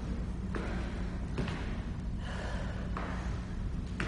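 A woman's hard breathing while she exercises during a high-intensity interval: a run of forceful exhales under a second apart, over a steady low hum.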